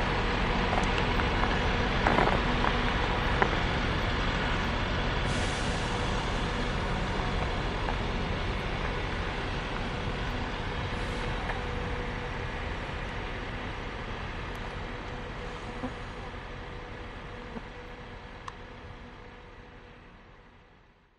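Steady ambient noise with a low rumble and hiss and a few faint clicks, slowly fading out over the second half.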